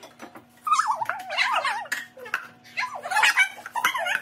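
A dog whining in high, wavering whimpers, two stretches about a second apart.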